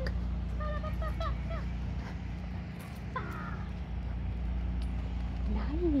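A crow calling a few times, short pitched caws, over a steady low outdoor rumble.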